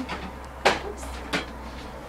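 Two sharp knocks, a little under a second apart, as a makeup organizer full of products is picked up and moved on a shelf.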